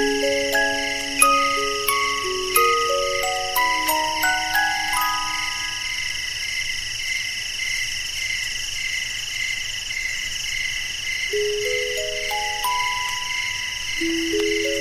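Music box playing a slow melody of plucked, ringing notes over a steady chorus of chirping crickets. The notes stop about five seconds in, leaving only the crickets, and the music box comes back near the end with a rising run of notes.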